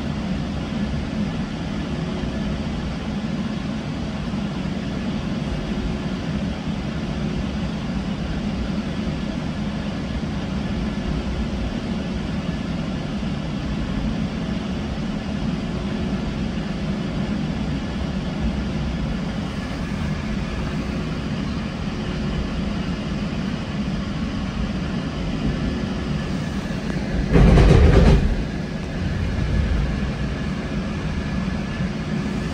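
GO Transit bilevel passenger train heard from inside the coach: the steady rumble of the car rolling along the track. Near the end comes a loud burst of noise lasting about a second.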